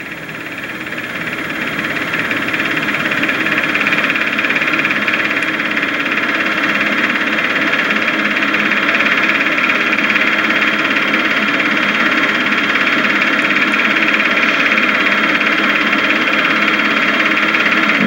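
A steady mechanical whirr with hiss that fades in over the first few seconds and then holds level, like a small motor running.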